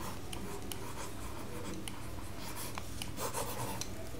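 Stylus writing on a tablet: light scratches and small taps as words and an underline are handwritten, busiest about two and a half to three and a half seconds in, over a steady low background hiss.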